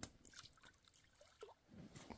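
Near silence with faint small splashes of a skipped flat stone touching the calm lake surface out on the water, two light touches about a second apart.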